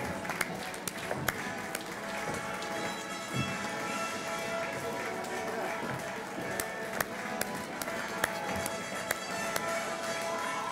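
Music playing in a large hall, with crowd chatter and scattered sharp clicks throughout.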